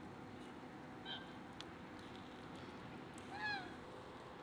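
Two short animal calls over a steady background hiss: a faint brief one about a second in, then a louder one near the end that rises and falls in pitch.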